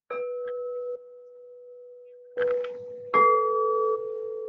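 Frosted crystal singing bowls being struck and left to ring. One bowl sounds a clear, steady tone at the start that drops away after about a second and keeps ringing softly. About two and a half and three seconds in, fresh strikes bring in a second, higher-ringing bowl over it.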